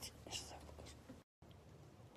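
A faint whispered voice close to the phone's microphone during the first second, then near silence with a low steady hum. The audio cuts out completely for a split second just past the middle.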